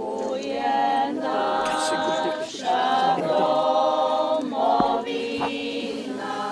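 A choir singing unaccompanied, with held sung notes that change every half second to a second.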